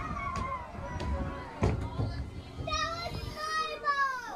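Children's voices and chatter, with a high voice calling out near the end, and a couple of sharp knocks at the start of the second half.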